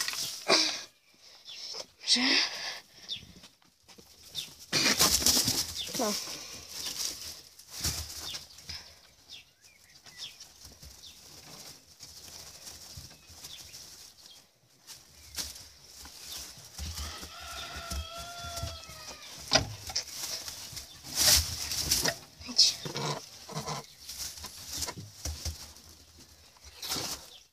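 Checkered Giant rabbits mating on straw in a wooden hutch: scuffling and rustling in the straw, with loud bursts of handling noise against the phone's microphone. Over halfway through, a bird calls three times in quick succession.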